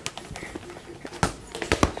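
A soccer ball kicked and bouncing on a hard shop floor. There are a few sharp thuds in the second half, the loudest about a second and a quarter in and two quick ones near the end.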